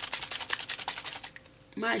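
Shimmer spray bottle shaken by hand, rattling in a rapid run of clicks, more than ten a second, that dies away after about a second and a half.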